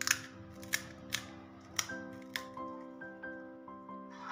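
Crisp, hollow fried puri shells cracking as a finger pokes them open, a handful of sharp cracks in the first two and a half seconds, over steady background music.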